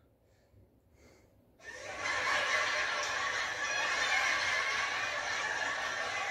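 Canned studio-audience laughter track, coming in about a second and a half in after a brief silence and going on steadily.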